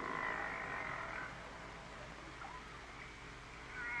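Faint underwater sea noise as picked up by submarine sonar hydrophones: a steady hiss with a high band of sound that fades out after about a second and comes back near the end, and a few faint animal-like calls.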